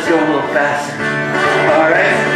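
Acoustic guitar being strummed with a voice singing over it, a lively children's action song.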